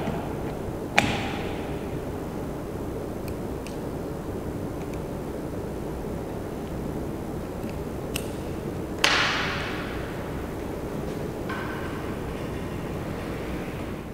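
Sharp metallic clicks as a dial torque meter is fitted into a tapper's two-jaw chuck and handled against the steel wrench and glass tabletop: one click about a second in and a louder one about nine seconds in with a short rattling tail, with a few faint ticks between, over a steady background hiss.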